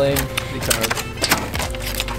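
A knife blade scraping scales off a carp on a metal tray: a quick, irregular run of sharp scraping clicks, with music in the background.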